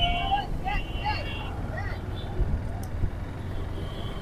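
Busy city street traffic: a steady rumble of engines, with a vehicle horn honking at the start and again about a second in, over background voices.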